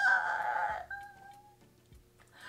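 A rooster crowing: one call that rises at the start, holds, then trails off thinly over about a second and a half.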